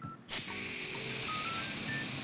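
Short, high, beep-like notes stepping up and down in pitch over a steady hiss that comes in just after the start.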